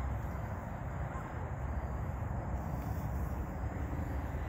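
Steady outdoor background noise: a low rumble under an even hiss, with no distinct events.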